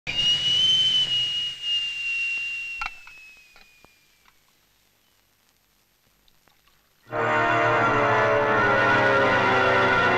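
Stovetop kettle whistling: one high tone that slowly sinks in pitch and fades away over about four seconds, with a sharp click partway through. After a few seconds of near silence, background music comes in about seven seconds in and takes over.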